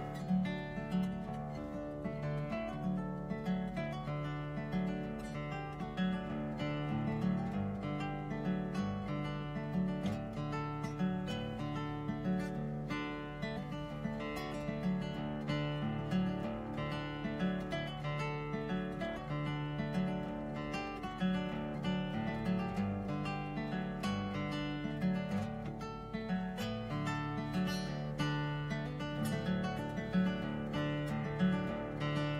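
Acoustic guitar played solo in a car's cabin, with a steady repeating rhythm of low bass notes under chords.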